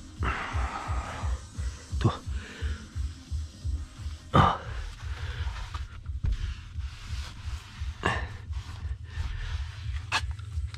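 Background music with a steady low pulsing beat. Over it come a few short scuffs, the loudest about four and a half seconds in, in keeping with a microfibre cloth being wiped over a leather steering wheel.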